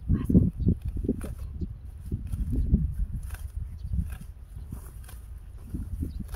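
Hand sickle cutting through bunches of horseweed stems, with irregular rustling and snapping of the leafy stalks as they are grabbed and cut.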